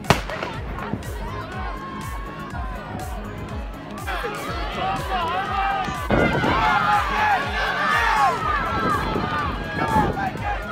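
A starter's pistol fires once, right at the start, sending off a girls' 800 m race. Spectators then yell and cheer, building from about four seconds in and loudest over the last few seconds.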